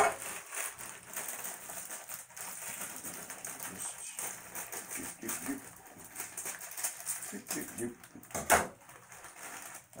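Plastic instant-ramen packets crinkling and rustling in the hands, with many small clicks as they are handled for cutting open with scissors. A single sharp snap or crunch about eight and a half seconds in is the loudest sound.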